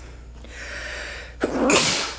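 A man sneezes once near the end, a short loud burst after a faint breath in.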